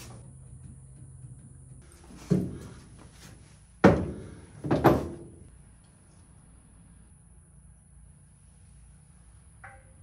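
Three dull thumps, about a second and a half apart, from parts and tools being handled on a car trunk's wooden floor, then little more than faint background.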